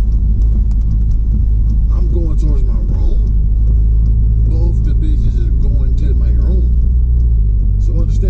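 Steady low engine and road rumble of a moving car, heard from inside the cabin.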